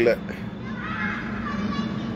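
A man's voice breaks off at the start, leaving a pause filled by a steady low hum and faint, distant voices about a second in.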